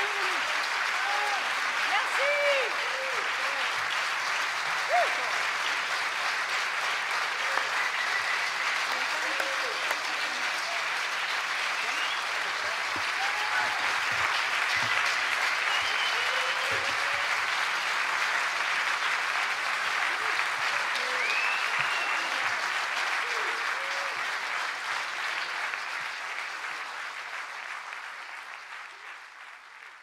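Audience applauding steadily, with scattered voices calling out over the clapping, dying away over the last few seconds.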